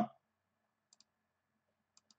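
Faint computer-mouse clicks: a quick pair about a second in and another near the end, with otherwise near-silent room tone.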